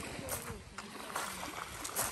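Small waves lapping on a pebble shore, a steady wash broken by a few short clicks of pebbles.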